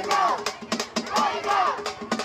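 Festival folk music: fast, steady drum strokes with repeated wailing tones that rise and fall in pitch, over a crowd.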